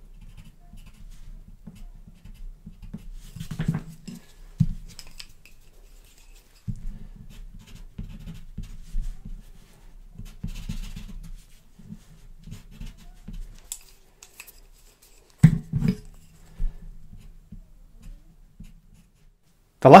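Pencil strokes scratching on toned paper in short intermittent bursts as a sanguine pencil and then a white pencil are worked over the drawing, with a few sharp knocks around 4 s and 15 s in.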